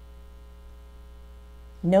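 Steady electrical mains hum with a faint buzz of many even tones above it; a woman starts speaking near the end.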